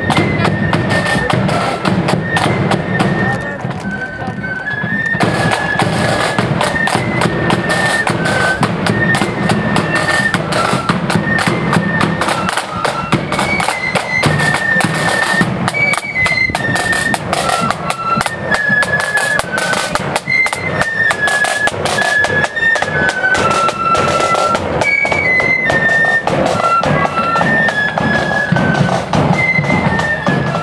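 Marching flute band playing a tune on flutes over side drums and a bass drum, with dense, regular drum strokes under a high stepping melody.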